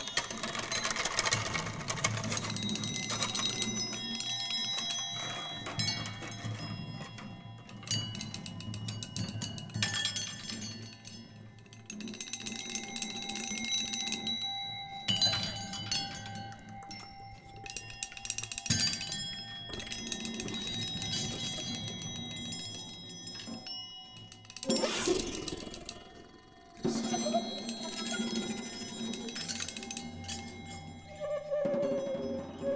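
Improvised percussion music: many ringing, chime-like tones overlap, swell and fade, with a sudden loud, noisy swell late on.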